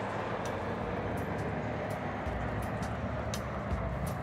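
SUV driving slowly past, its engine and tyres giving a steady noise with a low hum.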